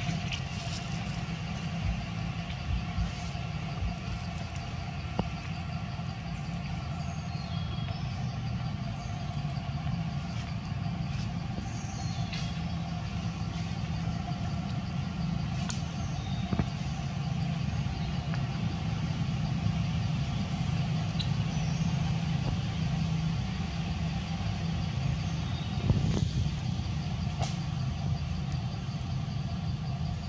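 A steady low mechanical drone, like an engine running, with steady tones above it and a slight swell near the end; faint short high chirps come and go over it.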